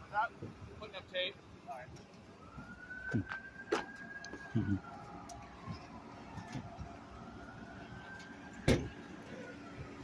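Emergency vehicle siren in a slow wail, rising and falling twice. A sharp knock near the end is the loudest sound, with a smaller click in the middle.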